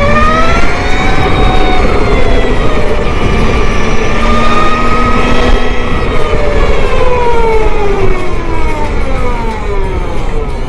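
Energica Ego electric motorcycle's motor and drive whine, a set of pitched tones climbing quickly as the bike pulls away, holding fairly level, then gliding down over the last few seconds as it slows. Low wind and road noise runs underneath.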